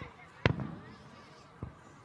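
Fireworks going off over a crowd: one sharp, loud bang about half a second in and a fainter bang near the end, with people's voices in the crowd between them.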